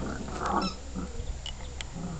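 Cavalier King Charles Spaniel puppy making a short, rough vocal sound about half a second in while playing, with a sharp click near the end.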